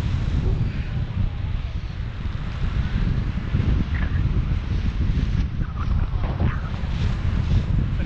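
Wind buffeting the camera microphone in flight on a tandem paraglider: a steady, loud low rumble, with a few faint voice fragments in the middle.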